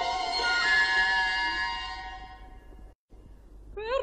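1950s radio recording of an opera orchestra holding sustained chords that fade away, a split second of dead silence near three seconds in, then a soprano's voice with wide vibrato entering near the end.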